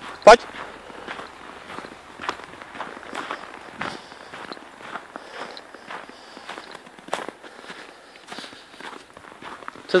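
Footsteps crunching on packed snow as a person walks at a steady pace, about two steps a second.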